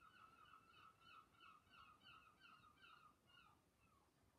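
Faint bird calls: a rapid run of short repeated notes, about four a second, that fades away near the end.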